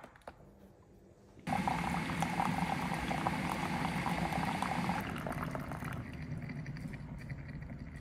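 MOA instant hot water dispenser pouring hot water into a ceramic mug. A click comes first; about a second and a half in the stream starts suddenly with a boiling, hissing pour, runs until about five seconds, and tapers off into a few drips.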